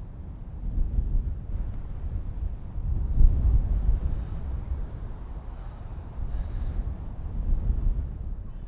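Wind buffeting the microphone in uneven gusts, a low rumble that swells strongest about three seconds in and again near the end.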